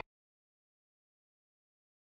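Dead silence with no room tone at all: the sound track is cut off.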